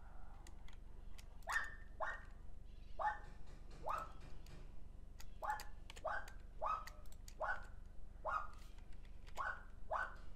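A dog barking in a run of short yaps, about eleven, roughly one a second, each rising sharply in pitch. Faint clicks sound between the yaps.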